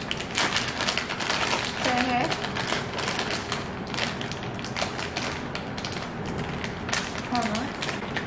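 Small plastic snack packet of onion-ring crisps crinkling and rustling as it is handled and torn open, a dense run of crackly clicks. A short vocal sound cuts in about two seconds in and again near the end.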